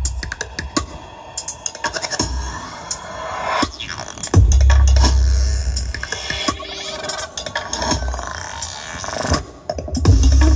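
Electronic dance music with scratch-like cuts and sharp hits, played loud through a large JIC PA demo rig of line-array tops and 18-inch LS 18125 subwoofers. A long, heavy sub-bass hit comes about halfway through, and a rising sweep near the end.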